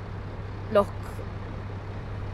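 Steady low rumble of outdoor city background noise.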